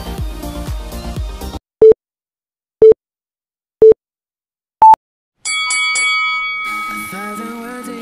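Background music cuts off, followed by countdown timer beeps: three short identical beeps a second apart and a fourth, higher beep on the go. A held music chord begins about a second later.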